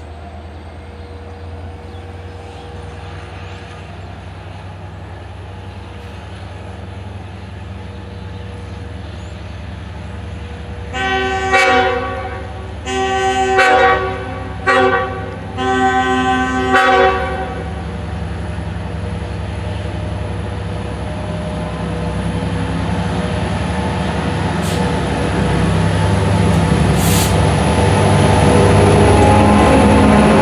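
An EMD DE30AC diesel locomotive sounds its horn as it approaches: four blasts in the grade-crossing pattern, long, long, short, long. The diesel engine's rumble then grows steadily louder as the train draws close.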